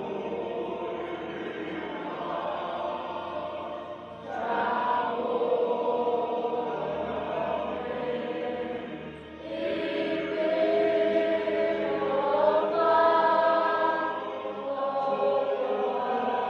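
A group of children singing together in phrases, with short breaks about four and nine seconds in and long held notes later on.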